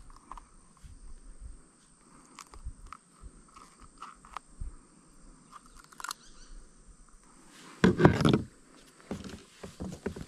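Faint outdoor pond ambience with a few scattered small clicks and knocks, with a faint steady high hum.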